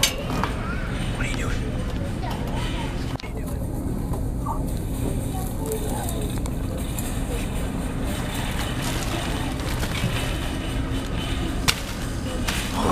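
Steady low background rumble with faint, indistinct voices, broken by a sharp knock at the start and another near the end.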